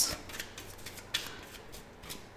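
Faint rustle of tarot cards being handled and slid against the deck, with one sharp card snap a little over a second in.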